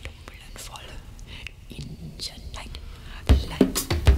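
Whispered vocal over a faint low hum, then the full band with drum kit comes in with a loud hit about three seconds in.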